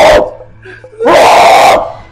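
Two loud shouts: the first cuts off just after the start, and a second comes about a second in, lasting most of a second. Faint background music plays beneath.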